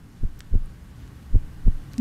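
Quiz-show suspense sound effect: a low heartbeat-like double thump, heard twice, over a steady low hum.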